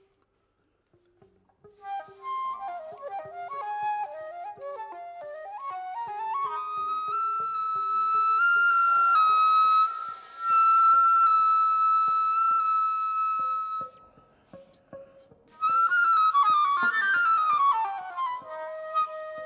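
Concert flute played solo, starting after a moment of near silence with quick short notes. It climbs to a long high held note, breaks off briefly, and ends with a fast falling run.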